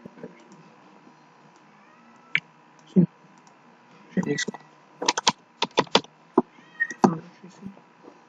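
Keystrokes on a computer keyboard, scattered at first and then a quick run of several near the middle, with mouse clicks, as a ZIP code is typed into a web form.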